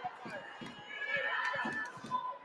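Gym crowd talking quietly in the pause before a free throw, with a few scattered faint knocks.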